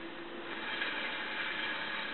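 Steady low hiss of background noise, with no distinct sounds.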